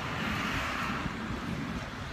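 Steady outdoor background of road traffic noise, an even hum with no distinct events.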